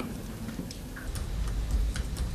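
A few faint, sharp clicks over quiet low room noise.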